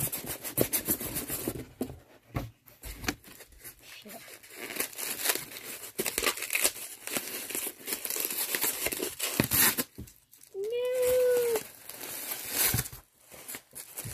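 Packaging being crinkled and torn by hand while a package is unwrapped: a long run of irregular rustles, crackles and tearing. About two-thirds of the way through, a voice makes a brief held sound of about a second.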